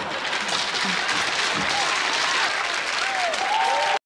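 Studio audience applauding steadily at the close of a comic monologue, with a few faint sliding tones over the clapping near the end.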